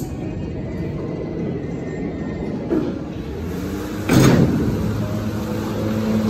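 Power-operated bi-parting vertical hoistway doors of a freight elevator opening, with a steady mechanical rumble. There is a knock nearly three seconds in and a loud clunk about four seconds in.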